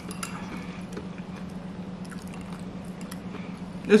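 A person chewing a mouthful of food with soft, wet mouth sounds and a few faint clicks, over a steady low hum.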